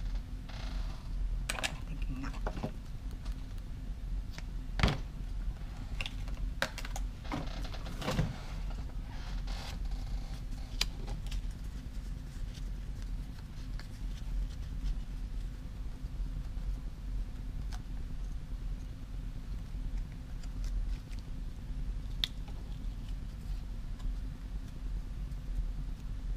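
Paper craft pieces handled on a cutting mat: scattered light clicks and rustles through the first ten seconds or so, the sharpest about five seconds in, over a steady low hum.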